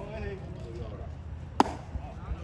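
A single sharp knock about one and a half seconds in, the loudest sound here, with voices talking in the first second over a steady low rumble.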